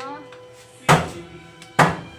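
A metal spatula knocking against a metal wok while pork pieces are stirred, two sharp clanks about a second apart.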